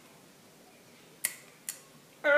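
Two short plastic-on-pit scrapes, the first with a brief rasp and the second a sharp click, about half a second apart in the second half: a plastic avocado tool's pitter being worked against an avocado pit that will not come loose.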